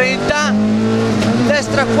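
Rally car engine heard from inside the cabin, pulling hard in second gear, its note steady apart from a brief break about a third of a second in.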